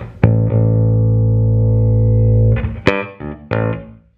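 Electric bass played clean through a Darkglass Alpha Omega pedal with its drive off and its EQ section engaged. One low note is plucked and held steady for about two seconds, then a few short plucked notes follow before the sound fades near the end.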